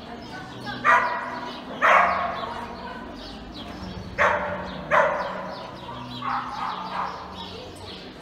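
A dog barking: two pairs of loud, sharp barks, each pair about a second apart, then two fainter barks near the end.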